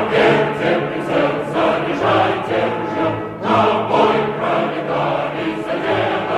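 Music with a choir singing, sustained choral notes swelling and fading.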